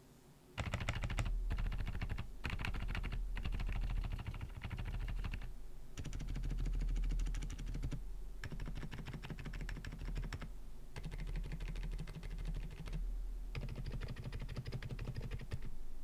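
Typing on an Aula F87 Pro mechanical keyboard with Outemu Silent Peach V2 silent linear switches, starting about half a second in and running in bursts with several short pauses.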